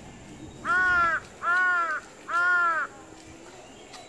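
A crow cawing three times in quick succession, each caw about half a second long and loud.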